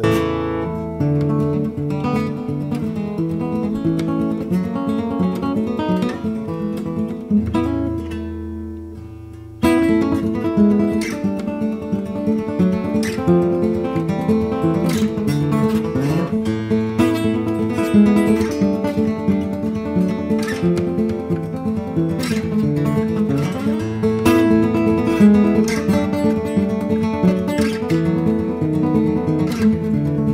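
Baritone five-string lojo, a big-bodied acoustic guitar with five strings, played acoustically without a pickup and picked in fast banjo-style rolls. About a third of the way in a low note is left to ring and fade for a couple of seconds, then the rolls start again suddenly.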